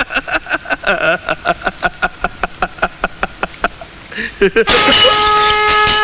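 A man laughing: a long run of rapid "ha-ha" pulses that slowly fades. About three-quarters of the way through, a loud, sustained musical chord from the film score comes in and holds.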